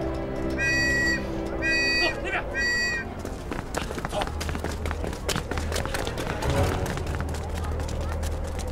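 Three short, high whistle blasts, evenly spaced about a second apart, over held background music.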